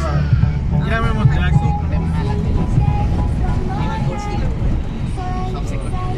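Steady low rumble of a car on the move, heard from inside the cabin, with a person's voice coming and going over it.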